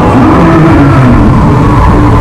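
Loud, steady rumbling wash of sound on a themed boat dark ride, the ride's soundtrack and effects mixed with the noise of the moving boat.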